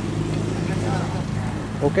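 A vehicle engine idling, a low, even hum that holds its pitch throughout, with faint voices in the background.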